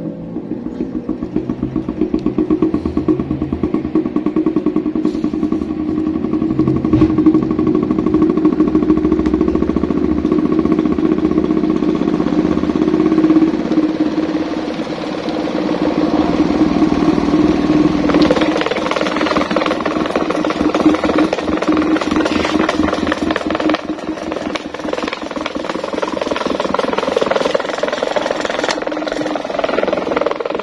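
Electric stand fan driving a large homemade disc-shaped rotor in place of its blades, running fast with a loud hum and a fast, fine vibration. The sound changes about eighteen seconds in, the low hum dropping away as the higher part grows.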